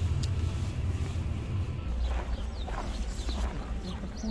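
Low steady rumble of a car's running engine heard inside the cabin. About two seconds in it gives way to a different, deeper low rumble with faint scattered sounds above it.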